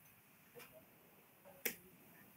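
Near silence on a video-call audio feed, broken once by a single sharp click a little past halfway.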